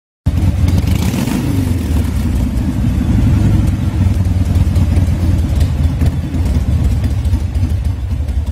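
Motorcycle engine running with a deep, rough rumble, revving up briefly about a second in.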